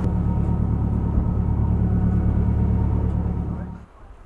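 Boat's machinery running with a steady low hum, fading out just before the end.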